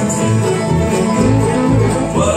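Bluegrass band playing an instrumental passage on banjo, fiddle, acoustic guitars and upright bass, the bass keeping a steady beat of about two notes a second.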